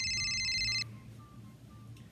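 Telephone ringing: one short, fast-trilling electronic ring lasting under a second.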